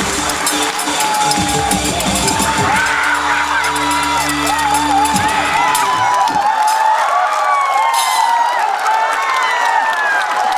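Music with a beat that ends on a held chord and stops about six seconds in, with an audience cheering and whooping over it and carrying on after the music stops.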